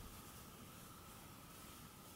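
Near silence: faint room tone with a steady low hiss.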